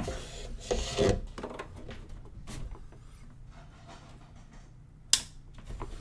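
Hands working cables against a desktop PC case: rubbing and scraping in the first second or so, quieter handling after that, then one sharp click about five seconds in.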